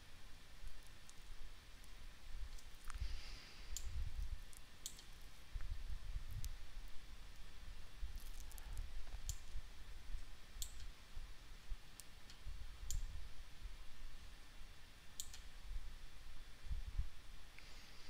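Computer mouse clicking: a dozen or so single sharp clicks at irregular intervals, over a faint low rumble.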